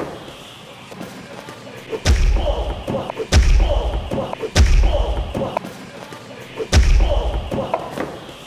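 A run of heavy thuds with a deep boom, four in all, one to two seconds apart, each with a short ringing tail: blows and takedowns landing on the host during an MMA sparring session.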